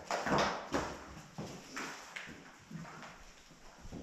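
A string of sharp knocks at an uneven pace, echoing off hard stone walls and growing fainter towards the end.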